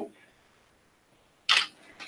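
Near silence, broken about one and a half seconds in by a single short, sharp sound.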